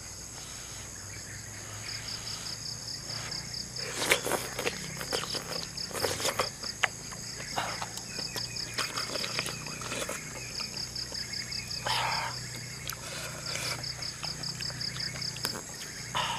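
Insects chirping in rapid, even pulses over a steady high buzz. A few short wet smacks and slurps of someone eating noodles and chewing mushroom break through now and then.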